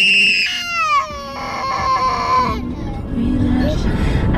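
Toddler crying: a loud, high wail that drops steeply in pitch about a second in, followed by a second, lower cry that stops about halfway through.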